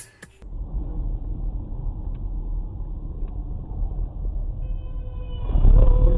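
Dash-cam recording of a car driving on a slushy road: a steady low rumble of road and engine noise heard from inside the car. Near the end the rumble swells to its loudest while a steady high tone with overtones sounds for about a second and a half.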